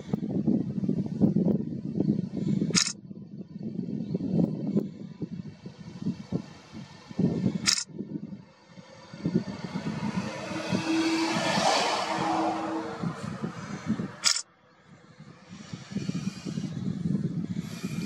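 Uneven low buffeting, like wind on the microphone. A vehicle passes, swelling and fading about ten to thirteen seconds in. Three sharp clicks come about three, eight and fourteen seconds in.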